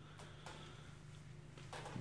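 Faint steady low hum of a small heat-powered thermoelectric (Peltier) stove fan spinning on a hot fireplace flue.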